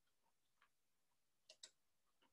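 Near silence, broken by two faint clicks in quick succession about a second and a half in.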